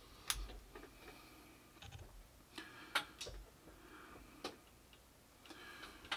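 Faint, irregular clicks and knocks of a microphone and its mount being handled and adjusted on a boom arm, with sharper clicks about a third of a second and three seconds in.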